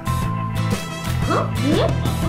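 Background music with steady low notes and chords. In the second half, brief sliding high sounds rise and fall over it.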